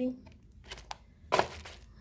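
Handling noise from a plastic body-cream jar and its cardboard packaging: a faint tick, then a short, sharp rustle and knock about a second and a half in.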